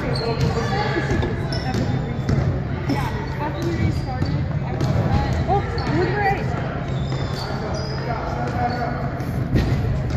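A basketball being dribbled repeatedly on a hardwood gym floor, amid the voices of players and spectators.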